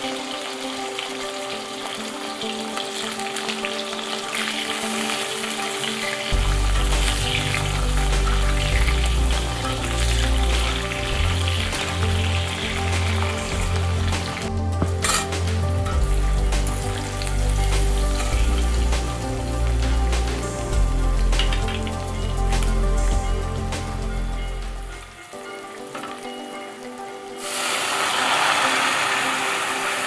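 Green mango slices sizzling in hot oil in an iron kadai, with the scrape of a steel spatula stirring them. Near the end the sizzling turns sharply louder as the lentil dal is poured into the hot pan.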